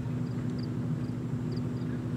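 Steady low hum with one constant tone underneath, and a faint high double chirp repeating about twice a second.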